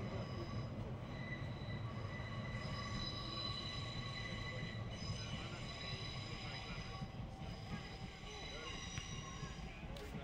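A steady low rumble with a high whine made of several held tones. The whine sets in about a second in and fades out near the end, like a machine passing at a distance.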